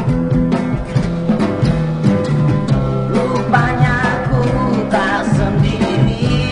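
Indonesian pop song played loud and steady: a sung melody over guitar accompaniment.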